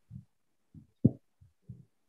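Five soft, low thumps at uneven spacing, the loudest about a second in.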